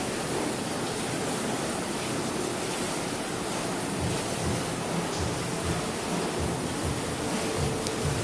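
Whirlpool hot tub with its jets running: a steady rushing of churning water, with soft low thumps in the second half.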